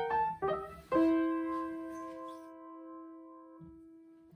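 Short keyboard phrase in a piano-like tone: a few quick notes, then a single note held and slowly fading away.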